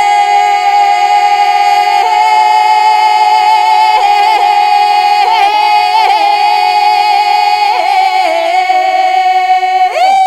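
Music: a long held voice-like note sounding over a steady drone an octave below, with small pitch ornaments in the middle.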